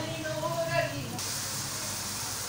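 A pan of Maggi instant noodles boiling in water: a steady hiss of bubbling that starts abruptly about a second in, after a voice in the first second.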